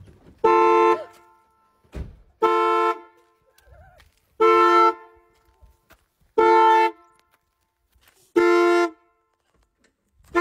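Car horn honking in a slow, regular pattern: five identical half-second blasts about two seconds apart, the way a car alarm sounds the horn.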